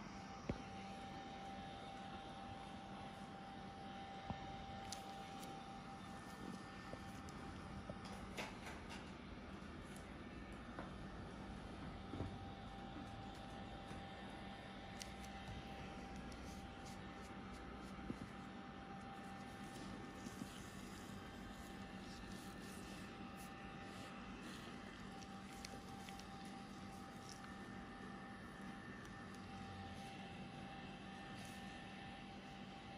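Faint steady background hum and hiss with a thin steady tone running through it, broken now and then by small clicks.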